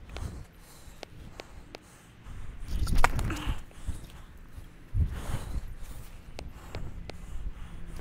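Tennis ball bounced on a hard court, a string of short sharp taps roughly every half second in the first two seconds. About three seconds in comes the loudest moment, a sharp crack within a low rumbling noise, and a second low surge follows at five seconds.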